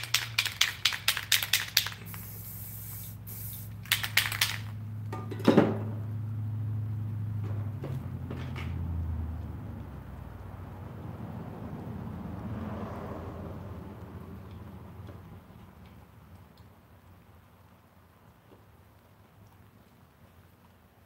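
Aerosol spray paint can being shaken, its mixing ball rattling about five times a second, followed by a short burst of spray and a few more rattles and a sharp knock. A low steady hum underneath fades away over the second half.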